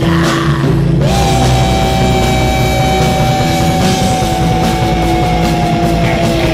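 Heavy folk-metal background music with guitars; about a second in, a long high note is held for several seconds, sagging slightly in pitch.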